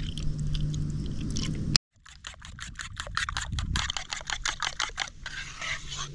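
Milk pouring from a carton into beaten eggs in a wooden bowl, cut off suddenly just under two seconds in. Then a wooden spatula beating the egg-and-milk mixture in the wooden bowl in quick wet strokes, several a second.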